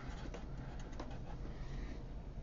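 Sharpie marker writing a word on paper: a faint, scratchy rustle of the felt tip over a steady low room hum.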